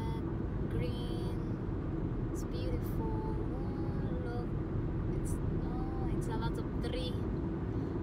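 Steady low road rumble of a car cruising at highway speed, heard from inside the cabin, with a faint voice over it.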